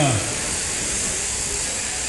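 Steady, even whirring hiss of electric sheep-shearing handpieces and their overhead drive gear running while sheep are being shorn.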